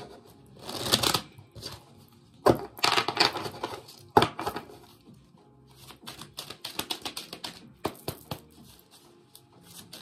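Oracle cards being shuffled by hand: a few rustling swishes, then a rapid run of small card flicks in the second half.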